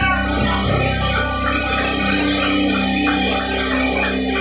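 Live band playing amplified music, with guitar over bass and drums.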